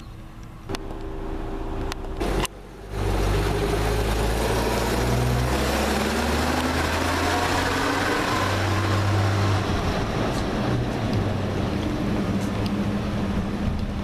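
1958 Chevrolet school bus engine running as the bus pulls away, starting about three seconds in, with its pitch shifting several times as it moves off.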